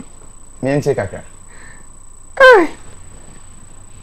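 A short spoken word, then about halfway through a loud, high cry from a voice that falls steeply in pitch within a fraction of a second.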